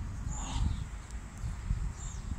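A bird calling with short, high notes that drop in pitch, once about half a second in and again at the end, over an irregular low rumble of wind on the microphone.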